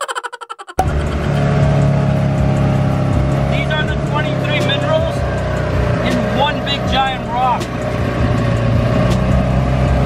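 A brief, rapid stutter of clicks in the first second, then a buggy engine running steadily at low speed, heard from the driver's seat.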